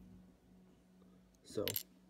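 Faint background music trailing off, then a short sharp clink about a second and a half in, together with a spoken word.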